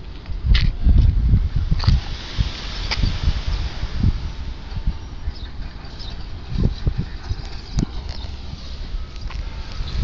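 Irregular low rumbling thumps and rustle from a handheld camera's microphone being carried and turned outdoors, heaviest in the first couple of seconds, over a steady outdoor background hiss with a few scattered clicks.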